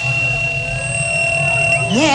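Club dance music in a breakdown: a steady high-pitched tone is held over a faint low pulse, and a rising sweep comes in near the end.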